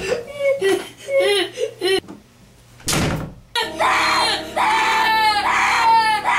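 Human voices whimpering in short rising-and-falling cries, a sharp thump just before three seconds in, then long, loud screams held on one pitch.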